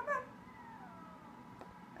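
A house cat meowing once: a faint, drawn-out meow that falls in pitch.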